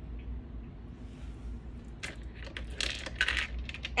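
Tiny hard sea-creature figurines being dropped back into a clear plastic organizer compartment. They make a quick flurry of light clicks and clinks about halfway through.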